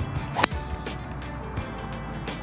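Driver striking a golf ball off the tee: a single sharp crack about half a second in, over background music. The ball is struck a little toward the heel, not super well.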